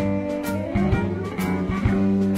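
Live blues band playing an instrumental passage: blues harmonica played into a microphone over electric guitars, electric bass and a drum kit, with a few sharp drum hits.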